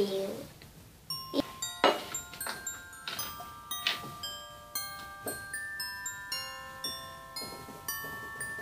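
Background music: a light melody of short, high, bell-like chiming notes, starting about a second in.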